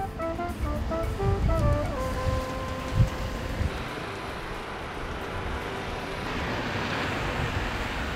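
Ocean waves breaking against a rocky shore and concrete seawall, a steady rushing surf with a few heavy thuds, the strongest about three seconds in, and a swell of noise toward the end. A short melodic music phrase plays over it in the first few seconds and then dies away.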